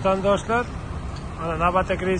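Voices talking over the steady low running of idling coach bus engines.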